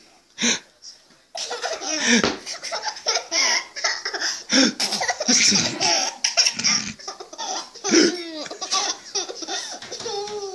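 A young child laughing and giggling in repeated bursts, beginning about a second and a half in after one short burst near the start.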